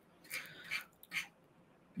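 Faint breathy, unvoiced sounds from a man close to a microphone: a couple of soft exhalations or whispered breaths.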